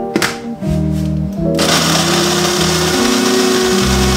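De'Longhi electric coffee grinder grinding coffee beans, its motor starting about a second and a half in and then running steadily.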